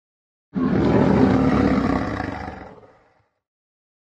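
A lion roar sound effect: one roar that starts suddenly about half a second in, holds, then fades away by about three seconds.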